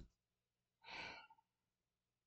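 A short low thump at the start, then a person's breathy sigh of about half a second around one second in.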